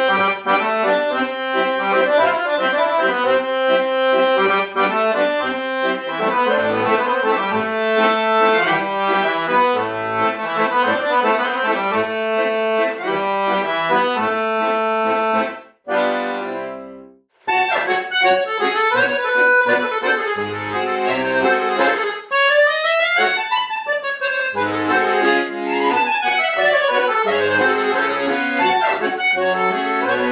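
Pigini piano accordion playing Balkan folk song intros (foršpils): a busy melody over short bass notes. About sixteen seconds in it stops for a second and a half, then the next intro starts, with fast rising and falling runs.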